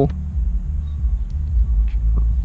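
Steady low rumble inside a Chevrolet Tahoe's cabin, with a few faint clicks.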